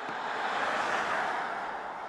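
Tyre and road noise of a Genesis GV70 EV passing by: an electric SUV, so a rushing sound with no engine note, which swells to a peak about a second in and then fades as the car moves away.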